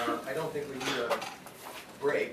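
Indistinct low talk among several people around a meeting table, with a few small clinks and knocks from things being handled on the table.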